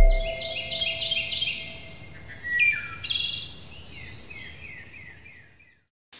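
Birdsong of quick high chirps and trills that fades out to silence just before the end, while a ringing musical tone dies away in the first two seconds.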